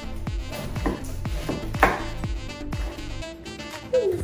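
A large kitchen knife chopping through a pineapple onto a wooden cutting board, a few cuts with the sharpest about two seconds in. Background music with a steady beat plays underneath.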